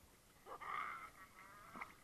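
A toddler's brief, high-pitched vocal sound, starting about half a second in, with a small click near the end.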